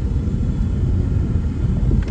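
Steady low rumble of a car on the move, heard from inside the cabin: engine and tyre road noise.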